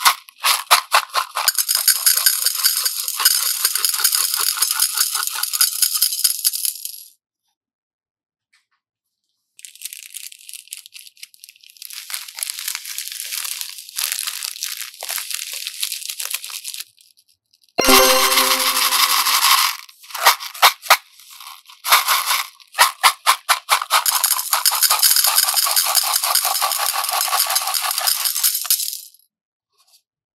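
Small plastic beads poured into a glass bowl, a dense run of rattling clicks in three long stretches with short silences between. A brief louder rustle with a low squeak comes just before the last stretch.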